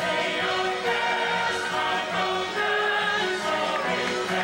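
A musical-theatre ensemble sings a full-cast number as a chorus, backed by a pit orchestra.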